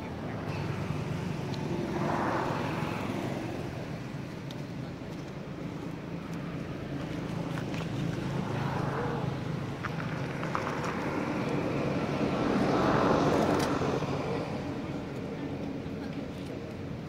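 Motor vehicles passing by, each swelling up and fading away, three times: about two seconds in, around nine seconds, and loudest around thirteen seconds, over a steady low hum.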